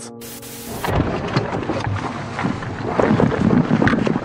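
A held music chord broken by a short burst of static, then rough field audio from a handheld news camera at a police arrest struggle: wind buffeting the microphone, rustling and knocks, with muffled voices.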